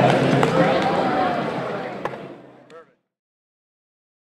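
Indistinct voices and chatter echoing in a gym, fading out steadily, with one sharp knock about two seconds in; the sound then cuts to silence just before three seconds in.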